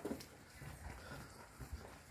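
Faint footsteps on a hard surface, several short low thuds spread through the moment.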